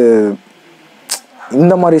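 A man talking in Tamil mixed with English. The speech breaks off for about a second in the middle, and a single brief sharp click falls in that pause.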